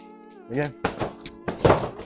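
Gloved punches landing on an Everlast PowerCore freestanding heavy bag: several sharp thuds in quick succession, the loudest about one and a half seconds in. Background music with sustained chords plays underneath.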